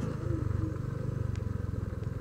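A Honda Vario 125 motor scooter's small single-cylinder engine running steadily at low revs, with a fast, even pulse.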